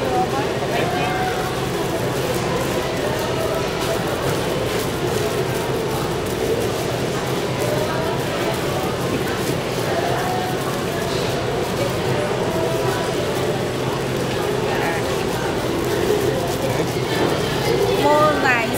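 Steady background din of a busy indoor shop and eatery: a constant low hum under faint, indistinct voices, with no clear single event.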